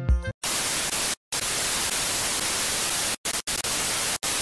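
Television static sound effect: a loud, even hiss of white noise, cut by short silent dropouts about a second in and twice a little after three seconds. It starts just as a bit of music ends.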